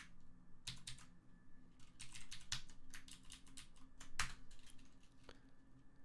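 Computer keyboard keys being typed in short irregular runs of clicks, densest about two to three seconds in, with one louder keystroke a little after four seconds.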